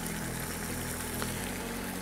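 A steady low hum with an even hiss, with no clicks or knocks.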